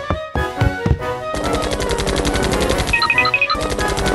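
Cheerful background music. About a second in, a rapid, even chopping sound effect of a helicopter's rotor starts over it, breaks off for a moment near the end and starts again. A few high twinkling chime notes sound about three seconds in.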